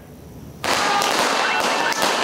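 Firecrackers going off in rapid, continuous crackling. The crackling starts suddenly about two-thirds of a second in and holds at a steady level.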